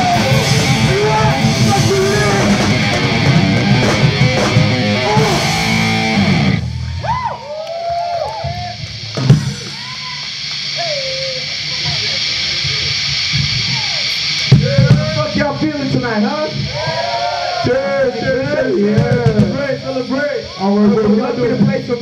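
Punk/metal band playing live with distorted electric guitar and drums, stopping abruptly about six and a half seconds in. Then loose shouting and whooping voices over a steady amplifier hiss, with a sharp knock a few seconds after the stop and busier voices later on.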